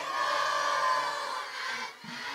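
Many voices singing a sholawat together, faint and blended, with no single voice standing out, easing off near the end.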